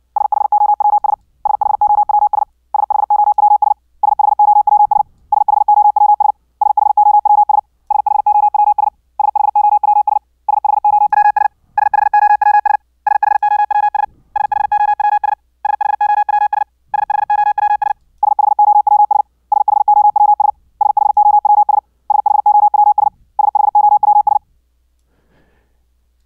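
Computer-generated Morse code (CW) practice tone: the same word is sent over and over at high speed, each repeat a burst of about a second of rapid beeps on one steady pitch, with short gaps between the repeats. From about 8 to 18 seconds in, the tone turns buzzier with added overtones as the sineCW oscillator's waveform is switched from sine to ramp. It then returns to a pure tone, and the sending stops about 24 seconds in.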